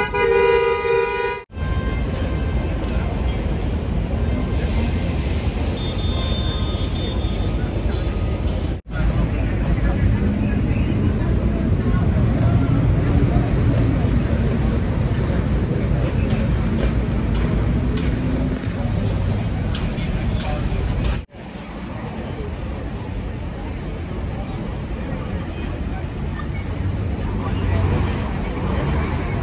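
City street traffic noise with indistinct voices and a car horn honking, broken by three abrupt cuts.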